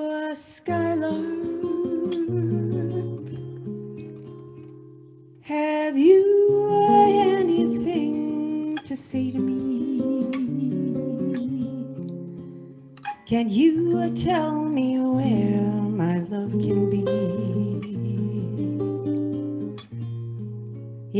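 A woman sings slow, wordless phrases into a microphone over a classical guitar accompaniment, in a jazz ballad. There are three phrases, each beginning loudly and fading, the second starting about five seconds in and the third about thirteen seconds in.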